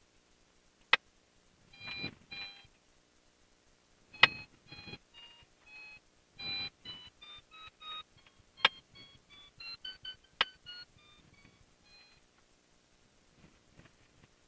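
A run of short electronic beeps at changing pitches, like a little tune, going on for about ten seconds. A few sharp clicks fall among the beeps.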